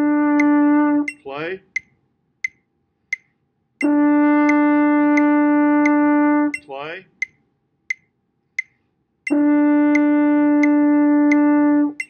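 French horn holding the written A, concert D, as a steady sustained tone. It plays in held notes of about three seconds each: the first ends about a second in, then two more follow with silent gaps between them. A metronome clicks steadily throughout at about three clicks every two seconds.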